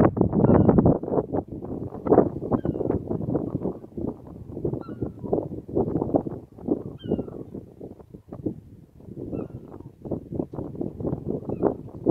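Wind buffeting the microphone in strong, uneven gusts, heaviest in the first second and then easing, over the faint working of an approaching 15-inch-gauge miniature steam locomotive. A few brief high chirps come and go.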